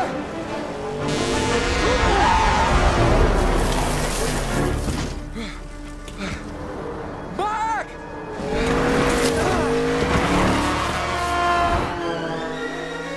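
Film soundtrack mix: dramatic music under highway traffic effects, with cars and trucks rushing past and tires squealing. The sound thins out around the middle, then swells again.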